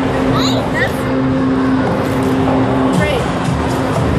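Background music and voices in a busy room, with a brief high-pitched voice about half a second in.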